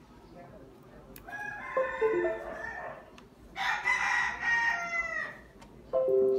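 Rooster crowing twice, first about a second in and again past the middle; the second crow falls away at its end.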